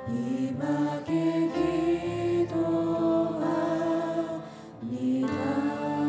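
A mixed-voice worship team sings a slow Korean praise song in long held notes, with acoustic guitar. The singing breaks briefly between lines about four and a half seconds in, then the next line begins.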